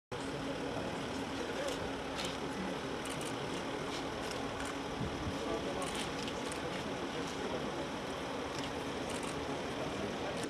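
Outdoor street background: a steady vehicle engine hum under indistinct voices of a small gathering, with scattered short clicks.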